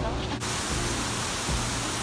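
Waterfall rushing: a steady, even wash of falling water that begins abruptly about half a second in, after a moment of voices.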